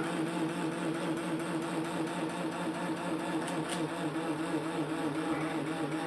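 Homemade magnet-and-air-core-coil generator running with its rotor spinning: a steady, even hum with two held low tones, while it lights its LED bulbs and charges a battery.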